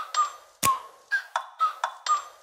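Intro sting of short pinging notes at slightly different pitches, about six or seven of them with sharp ticks, each dying away quickly.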